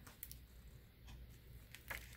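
Faint handling of a paper score pad as its pages are opened: a few soft paper clicks, the clearest near the end, over near silence.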